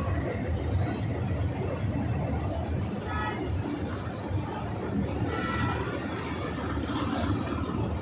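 Steady low rumble of a passenger train's coaches rolling across a steel bridge. Brief faint tones sound about three seconds in and again about five and a half seconds in.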